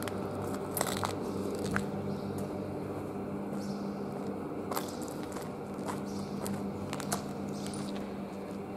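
Footsteps on a gritty, debris-strewn concrete floor, with scattered crunches and sharp clicks, over a steady low hum.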